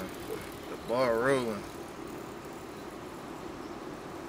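A man's short hum with a wavering pitch about a second in, over a faint steady low hum in a car cabin.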